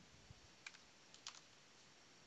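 Faint computer keyboard keystrokes: a few scattered clicks, two close together past the middle, over near silence.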